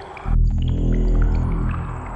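A deep, low sound effect in the score: a sudden boom about a quarter of a second in that holds as a low drone and fades near the end, marking the system being shut down.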